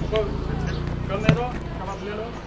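Voices in the background of a street over a steady low rumble, with a single sharp thump just over a second in.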